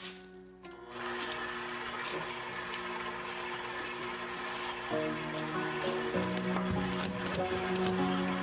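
Electric stand mixer running steadily, its motor starting up about a second in, with background music playing.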